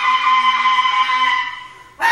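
Bass clarinet holding one long, steady note with strong overtones, which fades away in the last half second.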